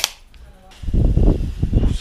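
A single sharp click, then about a second of loud, low rubbing rumble: handling noise on the microphone of a body-worn action camera as it is knocked and moved.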